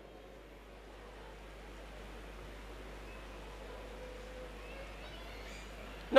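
Faint room tone through the sound system: a steady low hum under a soft, even hiss.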